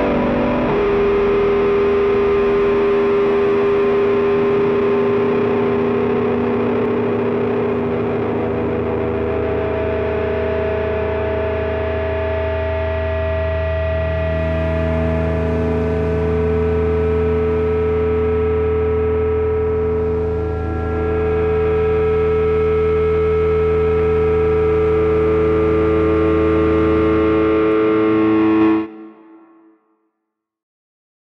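A live rock band's closing chord held out: a heavily distorted electric guitar run through effects rings on over a steady low note. The held notes shift about halfway through, and the sound cuts off abruptly about a second before the end.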